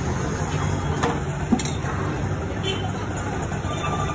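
Steady low street-stall background rumble, with a few sharp metal knocks of utensils against the pans, the loudest about a second and a half in.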